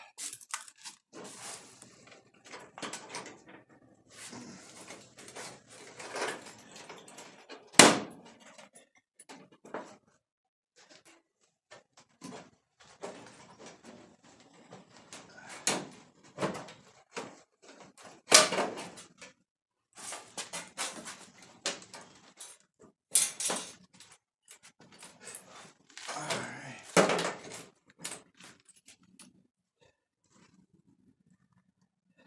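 A thin strip of cut-off sheet steel being worked and pulled away from the quarter-panel seam by hand: irregular metallic clanks, scrapes and rattles with pauses between them, the sharpest knock about eight seconds in.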